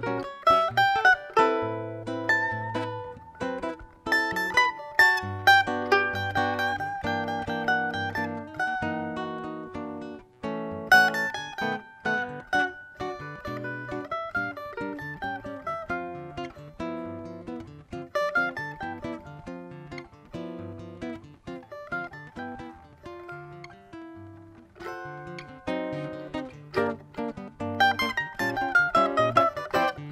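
Cavaquinho and nylon-string acoustic guitar playing an instrumental duet: a quick plucked melody over moving guitar bass notes.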